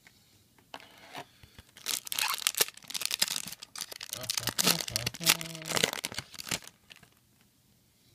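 A foil booster pack crinkling and being torn open by hand, in a run of crackly tearing bursts over several seconds.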